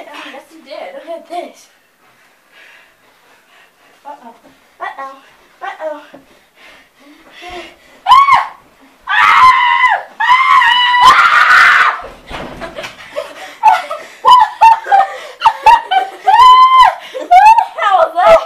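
Children shrieking and screaming with laughter while play-wrestling. It is quieter in the first half, then turns to loud, high-pitched shrieks from about halfway, ending in a string of short shrieks.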